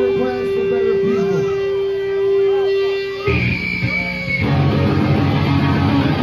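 Live punk band at full volume: a single held electric guitar tone with voices over it, then a little over three seconds in the whole band crashes in with distorted guitars and drums, a short high squeal riding on top at first.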